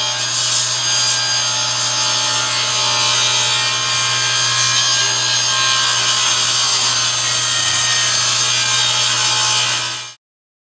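Table saw ripping a hardwood board lengthwise: the blade cutting steadily through the wood over a constant motor hum as the board is fed along the fence.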